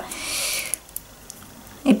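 A short breathy exhale, then a few faint small clicks as a plastic razor cartridge is handled.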